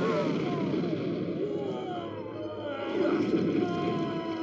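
A man's drawn-out, wavering cries and yells in a dubbed film fight, falling in pitch, over a dense low rumble of sound effects. Steady music tones rise near the end.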